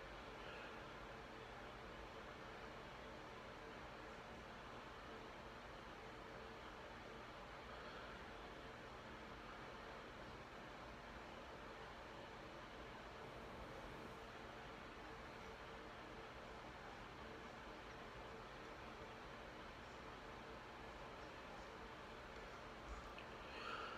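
Faint, steady hiss of an air conditioner running in a small room.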